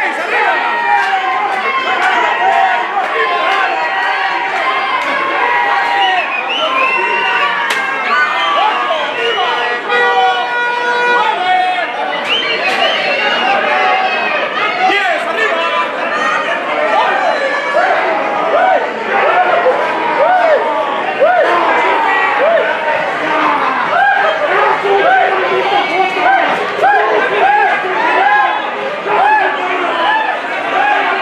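Wrestling crowd shouting and chattering, many voices over one another at once, with one long held note about ten seconds in.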